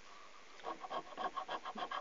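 The latex coating of a scratch-off lottery card being scratched away in quick, repeated short strokes, starting about half a second in.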